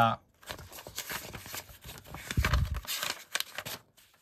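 Pages of a thick paperback comic digest being flipped by hand: paper rustling and quick page flicks, with a dull low bump about halfway through.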